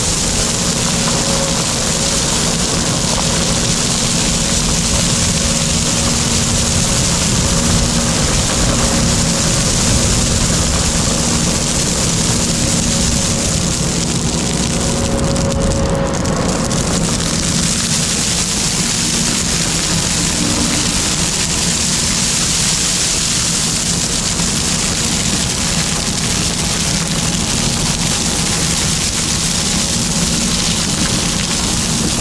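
Kubota SVL compact track loader's diesel engine running steadily while crushed stone pours out of its tipped bucket in a continuous rush. The pouring briefly thins about halfway through as the bucket empties, then fills back in.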